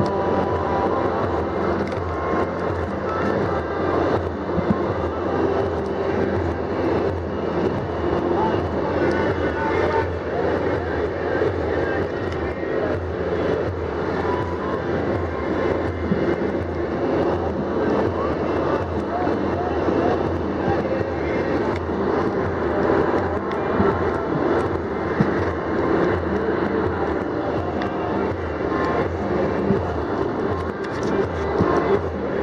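Steady engine and road noise of a moving vehicle, heard from inside the cabin.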